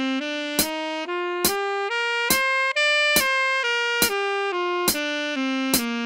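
Alto saxophone playing a stepwise run of even notes up a scale and back down, about two notes to each beat, against a metronome clicking steadily at 70 beats a minute.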